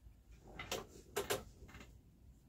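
Faint wooden clacks of a small boat shuttle being passed by hand through the shed of a floor loom: one knock, then two more close together about half a second later.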